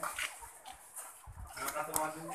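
Caged ready-to-lay hens calling and clucking in a series of short pitched calls, busiest near the end, with a few sharp taps mixed in.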